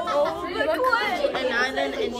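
Several young people's voices talking over one another: overlapping chatter.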